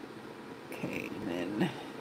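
A short wordless vocal sound from a person, about a second long with a brief louder peak at its end, over a steady background hiss.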